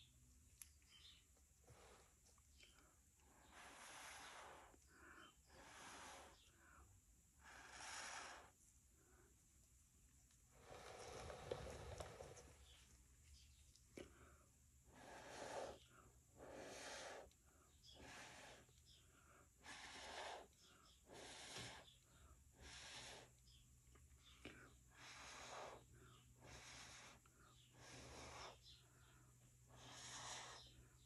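Faint, repeated short puffs of breath blown through a jumbo paper straw, about one a second, with a longer blow near the middle, pushing wet acrylic paint out into bloom shapes.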